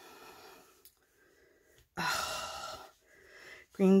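A woman's audible breaths: a faint one at the start, then a louder, gasp-like breath about two seconds in that lasts under a second, and a softer one just before she speaks.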